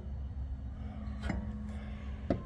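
Quiet handling noise under the car: a steady low hum with one light click a little past the middle as the adjustable upper control arm is held against the rear suspension.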